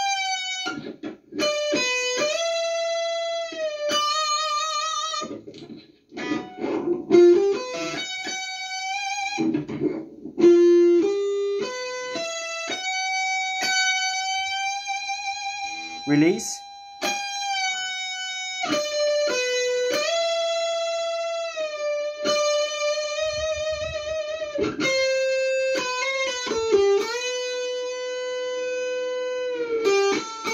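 Electric guitar playing a lead solo: held notes with vibrato, string bends sliding up in pitch, and fast runs of short notes. The guitar is a little out of tune.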